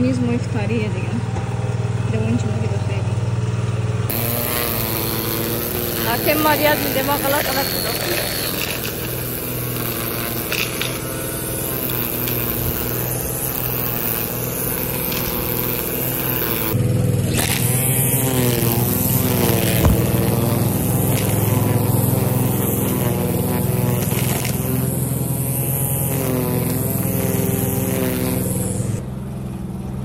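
Lawn-care machinery running: a steady motor hum, joined about four seconds in by the whirr of a string trimmer cutting grass, which stops near the end. Voices talk over it.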